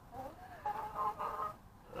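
Chickens clucking: a couple of short pitched calls, then one drawn-out call lasting most of a second.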